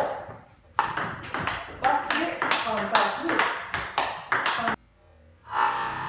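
Table tennis rally: the ball cracking off the rackets and bouncing on the table in a quick, even run of sharp clicks, forehand drives met with forehand counter-hits. The clicks stop abruptly about a second before the end, and background music comes in.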